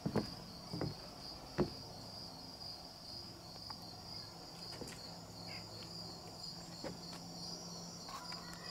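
A steady chorus of crickets chirping in a fast, even pulse. A few short knocks come in the first two seconds.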